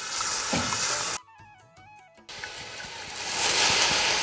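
Loud, steady hissing and sizzling of a pot of boiling spiced stock being stirred with a metal ladle. It cuts off a little after a second in, when a short stretch of background music plays, then comes back.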